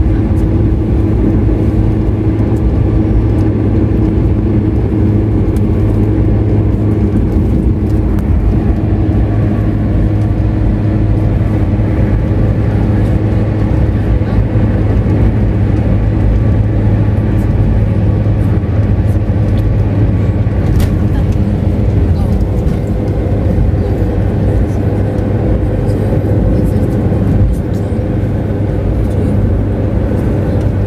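In-cabin drone of a car cruising at highway speed on a concrete toll road: steady engine hum and tyre noise. Near the end it turns a little quieter as the tyres pass from the concrete onto asphalt.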